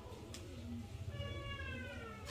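A cat meowing: one long, slightly falling call starting a little over a second in.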